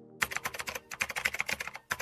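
Computer keyboard typing sound effect: a quick, even run of key clicks beginning about a quarter second in, laid under a line of text typing onto the screen letter by letter.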